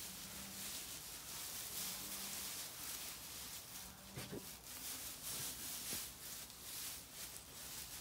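Dry straw bedding rustling as a small dog roots and digs through it with its nose and paws, in a run of short scratchy crackles.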